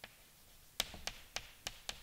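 Chalk tapping against a blackboard while writing: about six short, sharp taps, one at the start and the rest packed into the second half, fairly faint.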